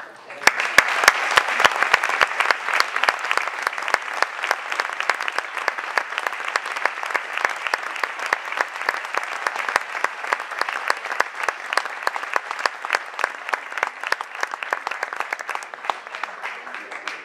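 Audience applause: many people clapping, starting suddenly about half a second in and holding steady, with a few sharp close claps standing out in the first few seconds.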